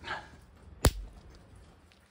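A single sharp snap of a spark, about a second in, as the Renogy 2000 W inverter's negative cable lug touches the negative terminal of a 12.8 V LiFePO4 battery. It is a normal inrush spark, which the owner takes for the inverter's capacitors charging on contact.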